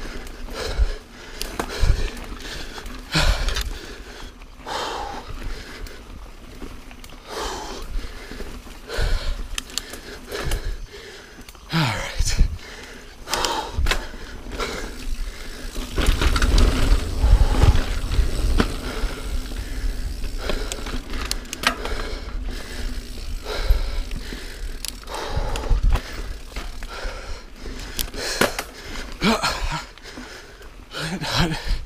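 Niner Jet 9 RDO full-suspension mountain bike ridden fast over dirt singletrack: tyres rolling on dirt and roots, with irregular clatter and knocks from the chain and frame. A heavier low rumble comes about halfway through.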